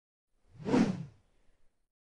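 A single whoosh sound effect of about half a second, roughly half a second in, a video-editing transition; otherwise digital silence.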